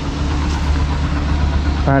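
Yamaha Libero 125's single-cylinder four-stroke engine idling steadily.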